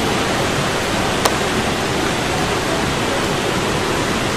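Steady, loud hiss of heavy rain, heard all through. A single sharp click sounds about a second in.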